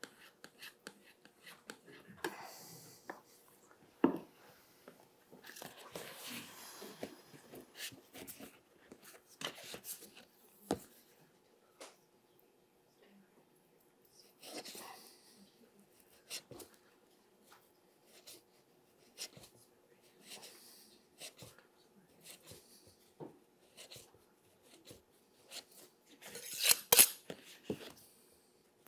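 Intermittent scraping strokes and small clicks of a tool worked against calf vellum on a bench, thinning its edge to a taper. There is a louder, denser run of strokes near the end.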